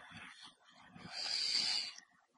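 A man drawing an audible breath: a soft hiss about a second long in the second half, after a faint click at the start.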